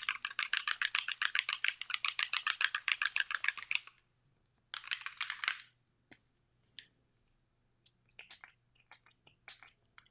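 A Distress Mica Stain spray bottle being shaken hard, its mixing ball rattling rapidly for about four seconds. Then one short spray from the pump nozzle about five seconds in, and a few faint clicks and taps.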